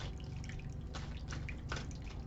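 Small tabletop water fountain trickling, with an irregular patter of drips over a faint low hum.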